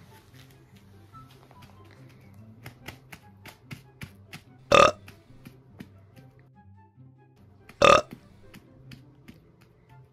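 Two loud, short burps about three seconds apart, played out as a baby doll is burped over the shoulder. A run of light taps comes before the first.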